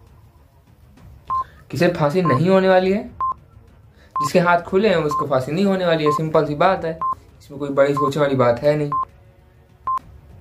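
A countdown stopwatch timer beeping once a second with a short high beep. In three stretches it is mixed with a man's voice, louder than the beeps, making sounds without clear words.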